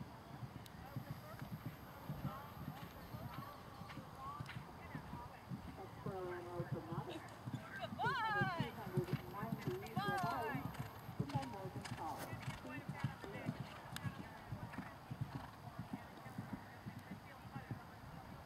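Hoofbeats of a horse cantering on turf, a steady run of dull thuds. In the middle come a few loud wavering calls that glide up and down, about eight and ten seconds in.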